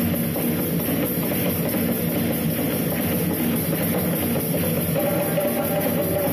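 Live percussion trio playing a rock-style piece: hand drums (djembe and congas) with a drum kit and marimba, dense, continuous drumming at a steady level.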